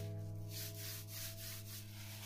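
A hand rubs back and forth over a crinkly plastic sheet on paper, giving short scratchy rasps about three times a second. Sustained background music notes run underneath and are the loudest sound.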